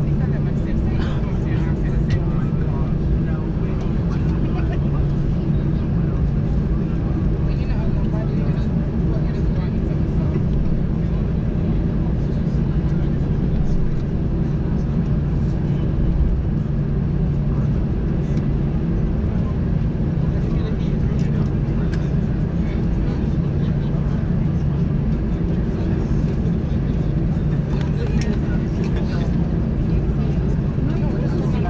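Steady cabin noise inside an Airbus A319 taxiing after landing: a constant low engine hum and airflow drone, with indistinct passenger voices underneath.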